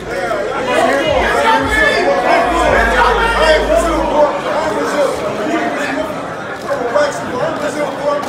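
Several men's voices talking loudly over one another in a heated face-to-face exchange, with chatter from people around them.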